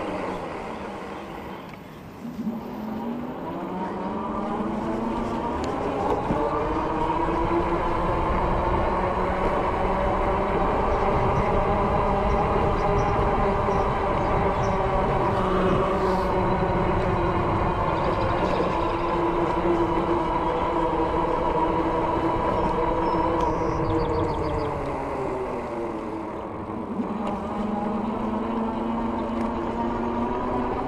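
Dirwin Pioneer 26x4 fat tire e-bike riding on concrete: a steady whirring hum of tyres and drive over a low rumble. It rises in pitch about two seconds in as the bike speeds up, holds steady, then drops in pitch near the end as it slows.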